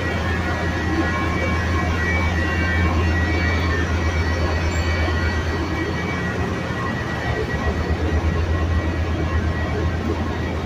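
Diesel locomotive idling at close range: a steady low rumble with a thin, steady whine above it.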